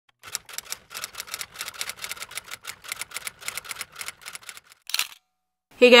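Typewriter-style key clicking as an intro sound effect, a quick, even run of about six clicks a second, ending in a brief swish about five seconds in.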